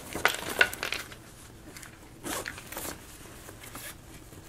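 Zipper on a nylon camera sling backpack being pulled open in short rasping runs: one in the first second and another about two seconds in.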